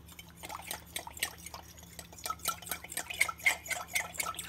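Metal spoon stirring cornstarch into cold water in a glass measuring cup: faint, irregular ticks of the spoon against the glass with a light sloshing of the slurry, the ticks coming faster in the second half.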